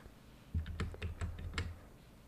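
Computer keyboard typing: a quick run of about eight faint key clicks lasting just over a second, starting about half a second in.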